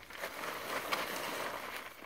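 A blue plastic tarp rustling steadily as a terrier and a horse tug at it.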